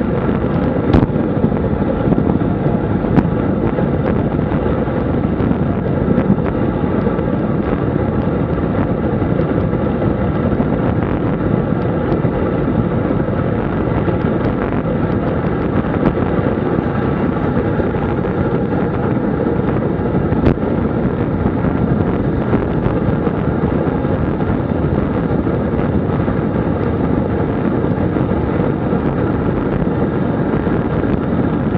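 Steady wind noise on the microphone of a road bike descending at speed, with a couple of brief sharp clicks.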